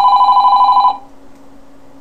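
An electronic ringer warbling fast between two tones, loud, cutting off suddenly about a second in; a faint low steady hum remains.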